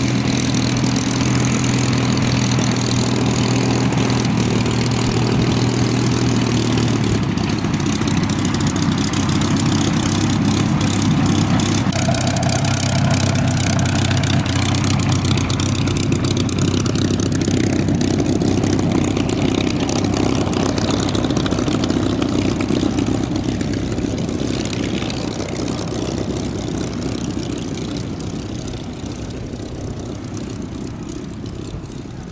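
Supermarine Spitfire T IX's Rolls-Royce Merlin V12 engine running at low taxiing power as the aircraft taxis past. Its note changes about seven seconds in, and the sound grows fainter over the last few seconds as it moves away.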